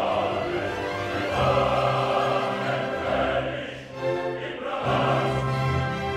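Opera chorus of men's voices singing with the orchestra, in two long sustained phrases with a brief dip between them about four seconds in.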